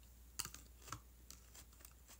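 Faint, light clicks and taps of small objects being handled close to the microphone, scattered through the quiet. The sharpest comes about half a second in and another near one second.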